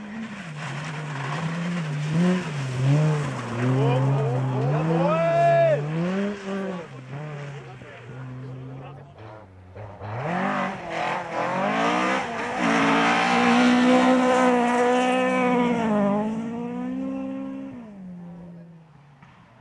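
Rally cars driven hard on loose-surface stages, engines revving high and dropping back with gear changes and lifts. One run fills the first half. After a short lull about nine seconds in, another car revs up, holds high revs for several seconds, and fades near the end.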